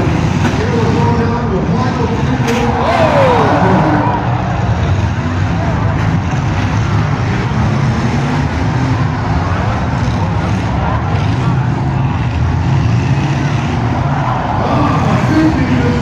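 Demolition derby cars' engines running and revving as they ram one another in a pack, with nearby spectators in the stands talking and shouting over them.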